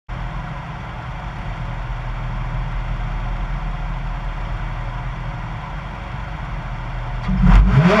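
Rally car's engine idling at the stage start line, then revved hard near the end, the pitch swinging up and down as the start approaches.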